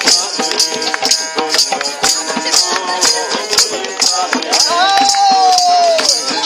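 People singing a folk song together with a hand drum and jingling percussion keeping a brisk, steady beat. Near the end one voice holds a long note that slowly slides down.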